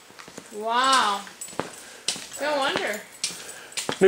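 A voice making a drawn-out wordless call that rises and falls in pitch about a second in, then a shorter wavering one near the end, with scattered light clicks.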